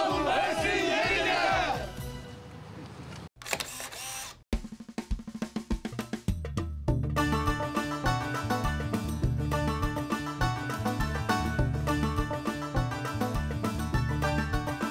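A group of men shouting together for about two seconds, then, after a short break, background music with a steady beat.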